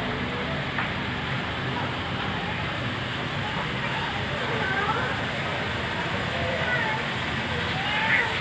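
Steady background noise with faint, distant voices now and then.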